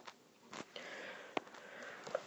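A faint sniff: a person drawing breath in through the nose for about a second, with two small clicks, one just before it and one during it.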